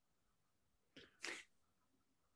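Near silence, broken about a second in by one short, sharp breathy burst from a person.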